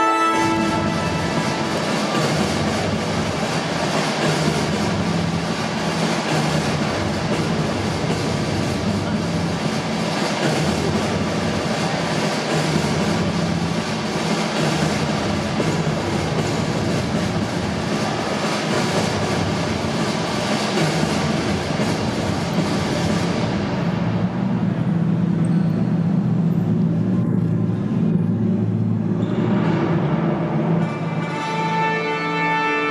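Loud show soundtrack over a public-address system: a dense rushing noise effect over a steady low hum, its hiss thinning a little after two-thirds of the way through, with pitched music coming back near the end.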